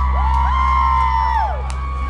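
A live rock band's closing chord is held and ringing, with loud whoops over it: voiced 'woo' calls that rise, hold and fall, each about a second long. A couple of sharp hits come near the end.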